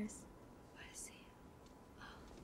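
Faint whispered speech, one brief breathy phrase about a second in, over near silence.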